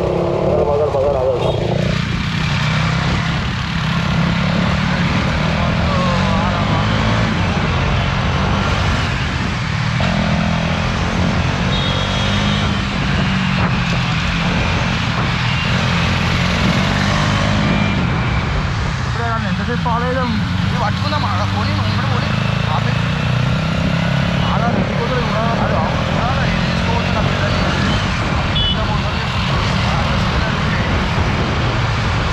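Motorcycle running steadily through city traffic, heard from the rider's seat with a constant low rumble of engine and wind on the microphone. Other vehicles pass close by.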